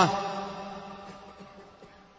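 The end of a man's chanted sermon phrase, its pitch falling off, followed by its reverberation fading away steadily over about two seconds.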